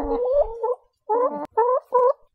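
Chicken clucking: a drawn-out wavering call, then three short clucks in the second half.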